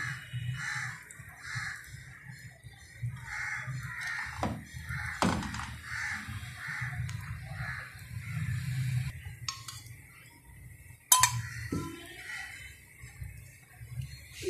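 Crows cawing over and over in the background, while utensils knock against a frying pan on a gas stove: three sharp clinks, the loudest near the end.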